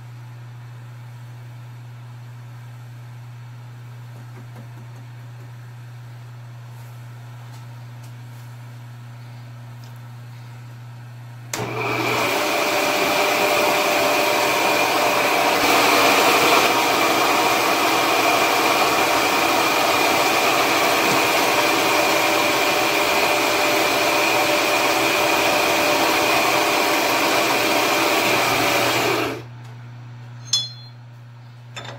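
Kondia knee mill's spindle running at speed with a steady whine while drilling an eighth-inch hole in a steel part; it starts abruptly about a third of the way in and stops shortly before the end. A low steady hum lies underneath before it starts.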